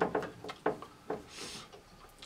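A quiet pause in a small room, with a few soft clicks and a short breath.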